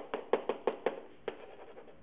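A stylus tapping and scratching on an interactive whiteboard while equations are handwritten: a quick run of about seven sharp clicks in the first second and a half, then softer.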